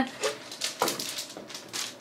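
Clear plastic wrap crinkling and rustling as it is handled and pulled off a wooden framed board, with two faint, brief pitched sounds in the first second.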